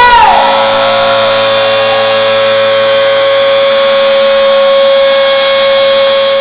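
A live rock band's final chord held out at full volume, with cymbals ringing over it. A sung note bends up and down in the first second before the held chord goes on steadily.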